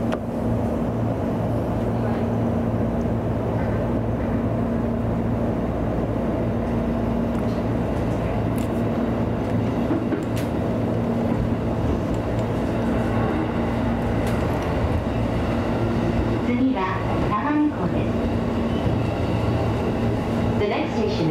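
JR East E233 series electric train heard from the cab as it runs slowly along the track: a steady rumble with a constant low hum and a few faint clicks.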